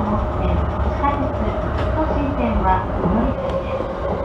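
JR Yamanote Line electric commuter train running, heard from inside near the driver's cab: a steady low rumble with a constant whine over it.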